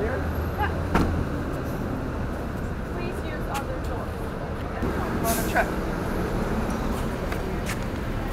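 City street ambience: a steady rumble of traffic, with a few short clicks and knocks.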